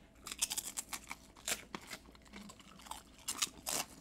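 Tortilla chips dipped in queso being bitten and chewed: a run of irregular crisp crunches, with clusters in the first second and again near the end.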